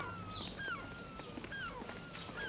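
Gulls calling: short cries that curve up and then fall, about two a second, some overlapping.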